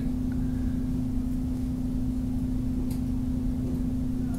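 Steady electrical hum with a low rumble underneath, the constant background noise of the recording setup, with a faint tick or two.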